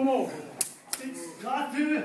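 Two sharp smacks of fists landing on a bare chest, about a third of a second apart, a little over half a second in, with shouted voices before and after them.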